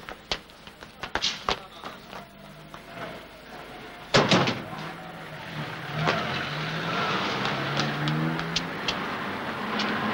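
A few sharp clicks and knocks, then a sudden loud start about four seconds in. It settles into a steady rushing noise with a low, wavering engine-like hum, as of a motor vehicle running.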